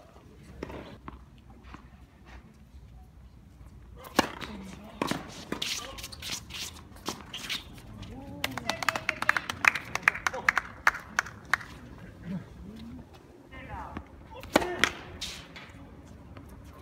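Tennis ball being struck by rackets during a doubles point: sharp pops, the loudest about 4 s in and near the end, with a quick run of smaller clicks in the middle. Players' voices are heard between the shots.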